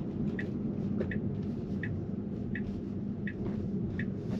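Steady low road and tyre rumble inside a Tesla's cabin as it drives into a roundabout, with a turn-signal indicator ticking softly and evenly about once every 0.7 seconds.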